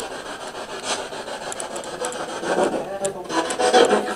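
Spirit box sweeping through radio stations: a continuous choppy hiss of static broken by short clicks, with faint fragments of voices in the second half.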